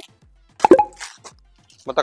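Short fragments of a man's voice over faint background music with a low, regular beat, and a brief sharp pop about two-thirds of a second in.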